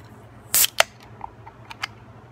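A carbonated Four Loko Watermelon aluminium can being cracked open by its pull tab: a short sharp burst of escaping pressure about half a second in, then a sharp click of the tab, with two faint clicks near the end.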